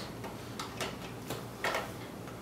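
A few light clicks and taps as a graphics card is handled and lined up over a motherboard's PCIe slot.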